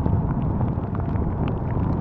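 Wind rumbling steadily on the microphone of a camera riding along on a moving bicycle, with scattered sharp ticks of heavy rain striking it.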